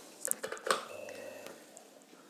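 Wall fan motor, running without its blade on freshly fitted bushes and shaft, giving only a faint steady hum. Two light clicks come in the first second.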